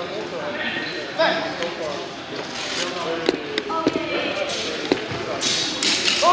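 Voices in a large echoing hall with several sharp knocks in the middle, then a quick flurry of sharp strikes near the end, most likely steel rapier and dagger blades clashing as the fencers close.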